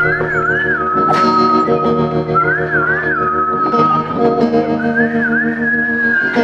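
Melodic trap sample loop: a high, whistle-like lead melody with quick wavering turns, over sustained chords and a plucked, guitar-like part.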